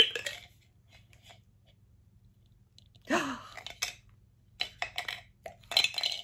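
Scattered clicks and crinkling from a Funko Soda can and its plastic-wrapped figure being handled, with a short vocal sound about three seconds in.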